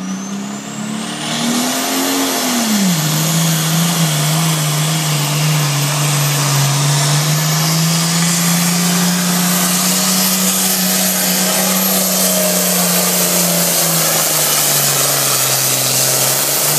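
International pulling tractor's diesel engine running at high revs under load as it drags the weight sled. The note climbs briefly about two seconds in and drops back, then holds steady and sags slightly near the end.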